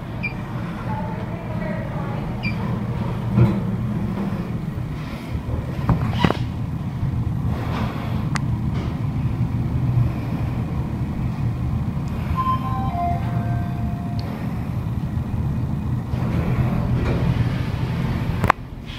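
Passenger lift car travelling down: a steady low hum of the ride with a few sharp clicks, and a short chime of three falling tones partway through.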